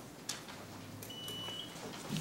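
A single short, high electronic beep, one steady tone lasting a little over half a second, over quiet room tone, with a faint click just before it.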